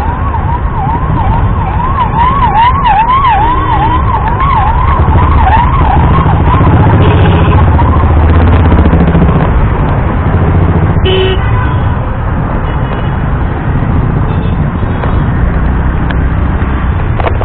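An emergency vehicle siren wailing rapidly up and down, about two to three cycles a second, fading out about halfway through, over loud, dense road-traffic rumble.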